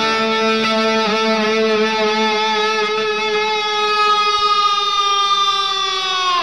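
Rock music: a single long sustained electric guitar note, held for several seconds and sagging slightly in pitch near the end.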